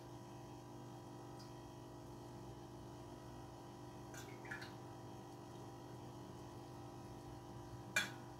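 Quiet room tone with a steady low hum, broken by a few faint short clinks, the clearest about four and a half seconds in.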